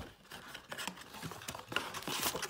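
Paperboard flap of a trading-card blaster box being worked open by hand: an irregular run of small scrapes, clicks and rustles of card stock.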